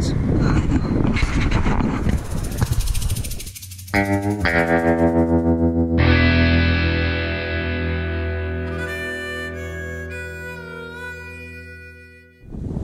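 Short intro music on distorted electric guitar. After a noisy opening, a fast pulsing riff starts about four seconds in. Then a single chord is struck and left to ring, fading out slowly.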